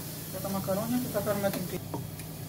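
A person speaking over the steady hiss of chopped leeks frying in a pan, with a low steady hum beneath; a couple of small clicks come near the end.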